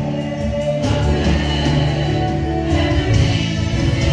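A group of singers performing gospel worship music with keyboard accompaniment.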